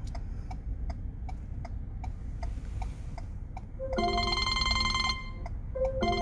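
Truck's indicator flasher clicking steadily, about two clicks a second. About four seconds in, a phone ringtone starts over it: a short beep and then a bright ringing tune, repeating.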